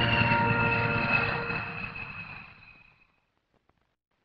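Aircraft engine noise with a high whine that slides slowly down in pitch, fading away to silence about three seconds in.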